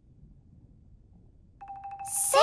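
A quiet pause with only a faint low background rumble; about one and a half seconds in, a steady electronic tone with a rapid ticking starts, the opening of a cartoon sound effect.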